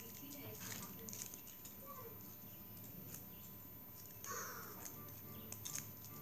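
Faint crinkling and rustling of a candy wrapper being handled and opened by hand, in short irregular crackles with one louder crinkle about four seconds in.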